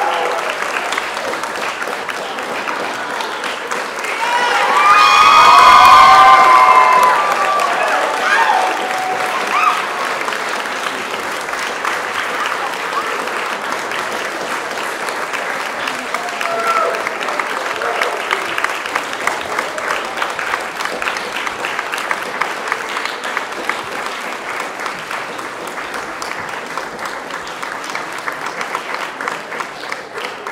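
Audience applauding, with a loud burst of cheering voices about four to seven seconds in; the clapping slowly thins toward the end.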